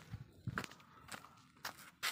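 Faint footsteps and scuffs on a concrete floor, a few short taps spaced roughly half a second apart.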